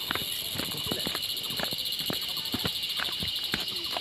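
Footsteps of a person walking briskly in sandals on a stony dirt path, about three to four steps a second, over a steady high-pitched hiss.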